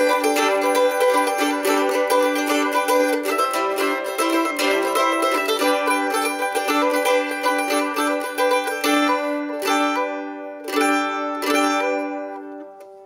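Mandolin strummed rapidly on G and C chord shapes, the middle finger hammering on at the second fret. About nine seconds in the strumming thins to a few single strums that ring and fade.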